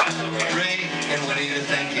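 Bar-room sound: people talking and glassware clinking, over a steady low tone. A sharp click at the very start.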